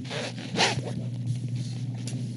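Brief rustling noises in a pause between words, the strongest about half a second in, over a low steady hum.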